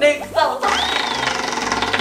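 A tabletop prize wheel spun by hand, its pointer ticking very rapidly against the pegs, starting about half a second in. A thin whistle-like tone rises and slowly falls over the clicking.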